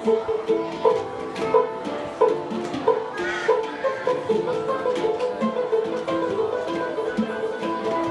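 A group of handpans playing a piece together: a steady rhythm of short struck metal notes that ring on and overlap.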